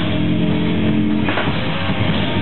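Live metal band playing loud: bass and electric guitars hold a ringing chord over drums, then break to a new chord with a sharp hit about a second and a half in.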